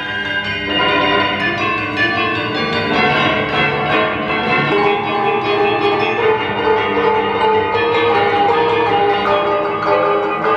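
A percussion ensemble of tall wooden-framed metal-rod instruments, a metallophone and bells played together: many overlapping bell-like metallic tones ringing on at once.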